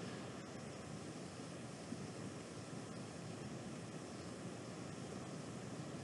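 Faint, steady hiss of background noise with no distinct sound, apart from one tiny click about two seconds in.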